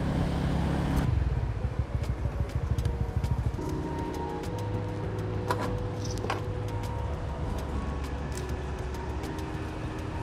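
A motorbike engine runs under way for about a second, then stops. After that come held tones that change pitch every second or two, background music, over a low uneven rumble and scattered clicks.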